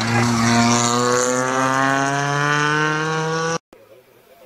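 Rally car engine running hard at steady high revs, its pitch rising slowly as the car drives through the gravel corner. The sound cuts off abruptly about three and a half seconds in.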